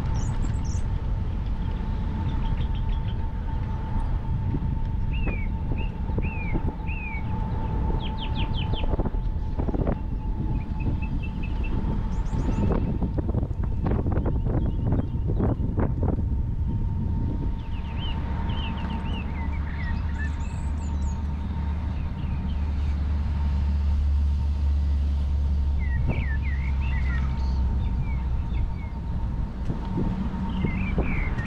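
A scooter riding along a paved trail: a steady thin motor whine over a continuous low rumble, with a run of sharp knocks and rattles around the middle. Birds chirp briefly now and then, and the low rumble swells in the last few seconds.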